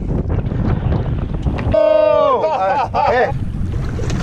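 A loud, drawn-out shout about halfway through, falling in pitch, followed by a shorter wavering cry, over a steady low rumble of wind on the microphone.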